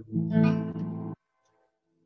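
Acoustic guitar strummed once. The chord rings for about a second, then cuts off suddenly.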